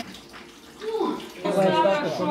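A moment of faint kitchen room noise, then a person's voice starting about a second in.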